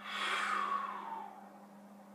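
A person's long, breathy sigh that falls in pitch and fades over about a second.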